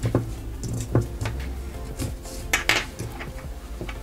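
Several light metallic clicks and clinks spread over a few seconds, from a metal paracord lacing fid knocking against the metal jig and buckle as a cord end is worked through the weave. Faint background music runs underneath.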